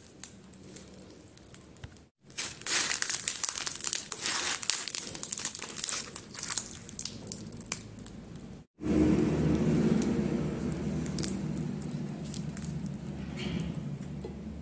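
Crispy pan-fried lahmacun crackling and breaking as it is folded and rolled by hand: a dense run of crackles lasting several seconds. After an abrupt break, a steady low hum takes over.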